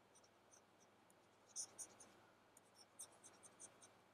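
Faint, scattered scratches and light taps of a stylus handwriting on a tablet, a few short strokes clustered in the middle, against near silence.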